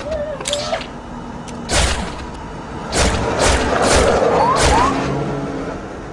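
Handgun shots fired toward the camera, about six spread over the first five seconds, with short rising tones among them and a loud noisy stretch in the middle that fades toward the end.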